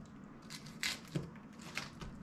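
Chef's knife cutting through the dense core of a raw cabbage quarter: a few short, crisp crunches.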